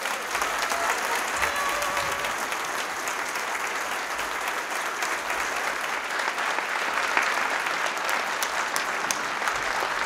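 Audience applauding steadily: a full room of hands clapping at an even level.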